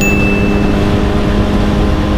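Suzuki Hayabusa's inline-four engine running at a steady cruise on the highway, its note holding constant under heavy wind and road noise. A brief high tone sounds in the first second.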